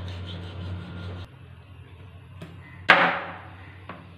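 A meat cleaver chopping once, hard, into a fish on a plastic cutting board: a single loud, sharp strike about three seconds in with a short ringing tail. Before it, a fish is scraped in a stainless-steel sink, with faint light scraping over a low steady hum.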